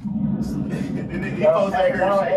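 Speech: a man's voice, words not made out.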